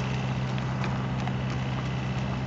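A horse walking on gravel, its hooves crunching in a loose, irregular rhythm, with the handler's footsteps mixed in. A steady low hum runs underneath.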